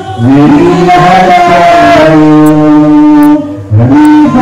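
A man singing long, drawn-out notes into a handheld microphone through a church PA, loud, with pitch glides between the held notes. The singing breaks off briefly just after the start and again near the end.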